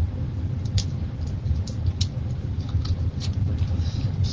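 Jacket fabric rustling in a string of short, scratchy swishes as the jacket is pulled off, over a steady low rumble.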